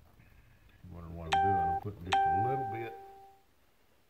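Two bell-like chime tones, the second starting less than a second after the first and ringing longer. A voice is heard under them.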